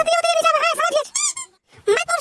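A high-pitched, squeaky, sped-up cartoon voice chattering in rapid syllables that make no recognisable words. It breaks off briefly about three-quarters of the way through.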